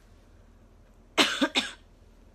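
A young woman coughing twice in quick succession, a little over a second in.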